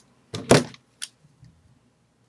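Handling noise as a cordless phone handset and a headset with its cord are grabbed and lifted: a loud clatter about half a second in, then a sharp click about a second in and a fainter knock.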